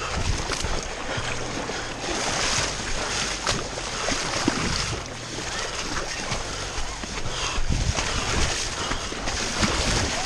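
Running feet splashing through shallow water, close to the microphone: a continuous wash of spray broken by repeated footfall splashes.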